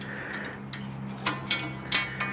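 A few light metallic clicks in the second half, from steel Unistrut channel and spring nuts being handled, over a steady low hum.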